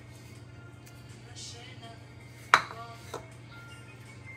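A ceramic bowl set down on a granite countertop: one sharp clink about halfway through with a brief ring, then a smaller tick. Faint background music runs underneath.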